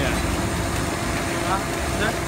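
Electric blower feeding air into a charcoal forge, running with a steady hum and air noise.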